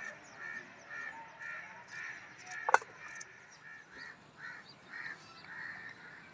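Birds calling over and over, a short call about twice a second. A single sharp knock about three seconds in is the loudest sound.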